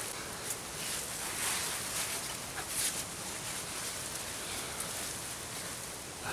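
Steady outdoor background noise with a few faint rustles, about one and a half and three seconds in.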